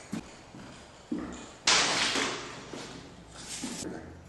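Handling noise from drywall work: a couple of light knocks, then a louder scraping rush about a second and a half in that fades away over about a second, with a few smaller knocks near the end.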